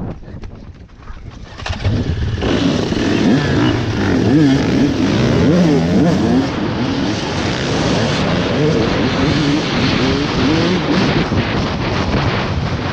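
A pack of motocross dirt bikes revving and accelerating together, heard from among the group, with several engine notes rising and falling over each other. It gets much louder about two seconds in and stays loud.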